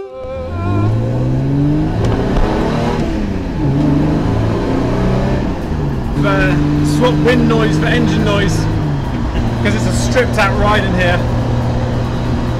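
The Vauxhall Omega MV6 V6 engine in a Reliant Scimitar SE6a on the move. It revs up through the gears, its pitch rising in steps over the first few seconds, then holds a steady pitch while cruising, and settles lower about nine seconds in.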